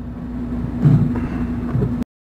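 Soft bumps and knocks of leather washers and a wooden board being handled on a workbench, twice, about a second in and near the end, over a steady low hum. The sound cuts off abruptly at the end.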